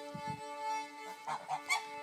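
A fiddle bowing a steady drone, two notes held together on open strings, with a couple of short fowl calls partway through.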